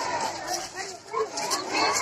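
A crowd of children's voices shouting and calling out together, many voices overlapping.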